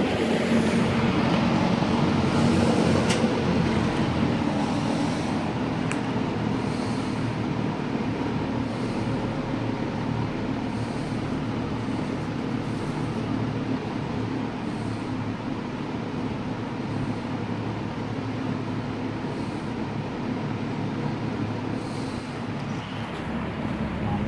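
Air King MR20F box fan with a Westinghouse motor running on a reduced speed setting: a steady rush of air over a low motor hum. It gets gradually quieter over the first dozen seconds as the blade settles to the slower speed, then holds steady.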